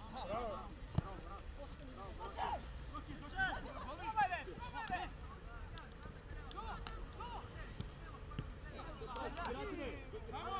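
Footballers shouting and calling to one another across an open pitch during play, short scattered calls throughout, with one sharp knock about a second in.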